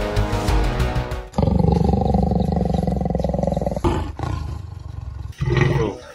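Background music gives way, a little over a second in, to a leopard growling in a trap cage: a long, low, continuous growl, a louder snarl about four seconds in, then a fainter stretch and a short break near the end.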